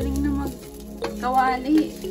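Rice frying in a metal wok, sizzling as it is stirred and scraped with a wooden spatula, under background music.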